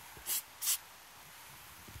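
Two short hisses from an aerosol spray paint can, grey paint sprayed in quick squirts about half a second apart.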